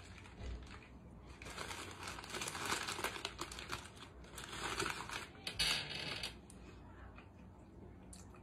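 Brown paper bag crinkling and rustling as a hot dog is handled in it, in irregular bursts that are loudest about five and a half seconds in.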